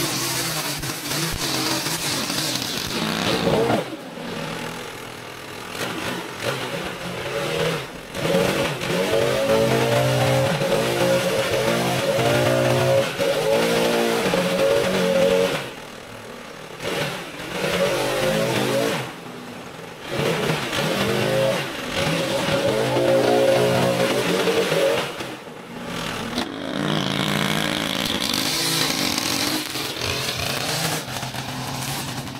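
Two-stroke gas yard tools, a Stihl string trimmer and a backpack leaf blower, running with the throttle revved up and down. The sound breaks off and changes abruptly several times.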